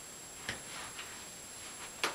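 Quiet room with about three faint, short clicks spread through it, like small objects being handled at a counter.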